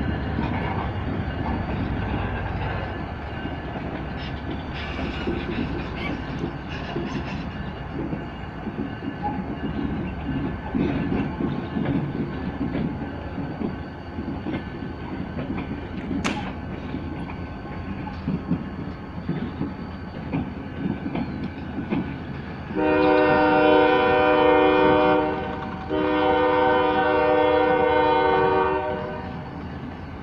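Diesel locomotives rumbling past at close range, with wheels rattling over the rail. Near the end, a locomotive horn sounds two long blasts, the second slightly longer, louder than everything else.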